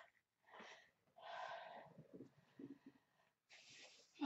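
A person's faint audible breathing: a short breath about half a second in, a longer breath lasting about a second, and another breath near the end.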